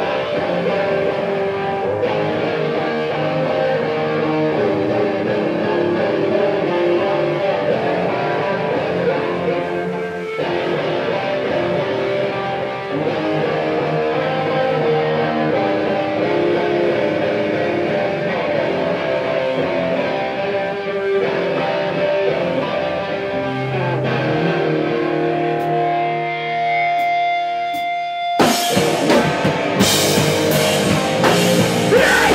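Electric guitar played on its own, with held notes and chords ringing. Near the end, drums crash in and the full band starts up.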